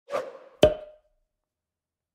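Logo-sting sound effect: a short swoosh, then a sharp hit just over half a second in that rings briefly on one tone and dies away within the first second.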